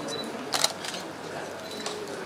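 Camera shutters clicking: a loud double click about half a second in and a smaller click near the end, with short high beeps, over a low murmur of voices in the room.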